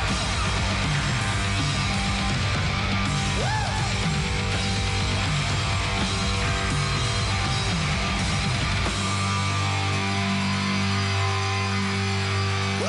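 Live hard rock played loud by a full band: distorted electric guitars, bass and a steady drum beat. About nine seconds in the beat drops out and a held chord rings on.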